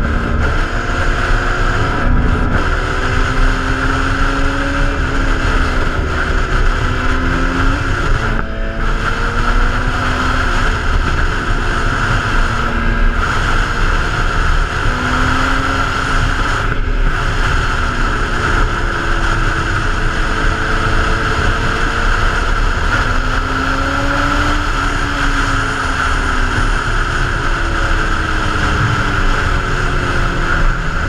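Sport motorcycle engine running under way, its note slowly rising and falling with speed, under heavy wind rush on the microphone.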